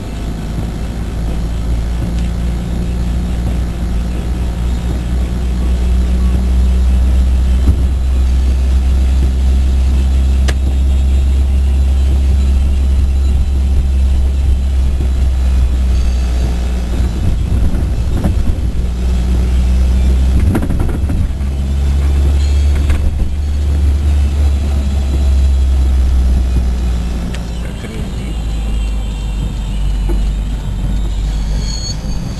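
Car cabin noise while driving: a steady, loud low rumble of engine and tyres on the road, rising and easing a little as the car moves along.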